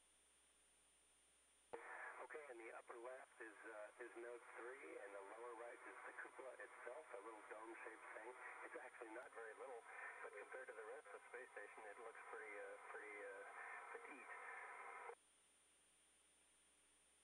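A voice speaking over a narrow-band radio link, with a thin, telephone-like sound. The transmission switches on abruptly about two seconds in and cuts off sharply near the end.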